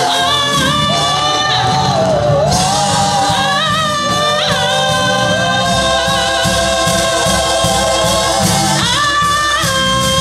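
A group of women singers performing a gospel praise song together through microphones, holding long notes, over live church-band accompaniment with organ and keyboard.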